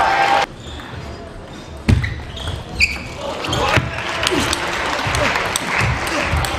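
Table tennis ball clicking off bats and table in a rally, the strokes coming quicker toward the end, with shoes squeaking on the court floor. Under it runs a murmur of voices in a large hall, and a louder burst of hall noise stops about half a second in.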